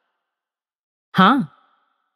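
Silence, then a single drawn-out spoken "haan" ("yes") in a woman's voice about a second in, its pitch rising and then falling.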